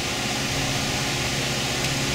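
A fan running steadily: an even hum with hiss that does not change.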